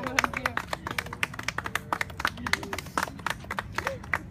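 A few people clapping in quick, uneven claps, with voices calling out and one drawn-out vocal sound about a second in.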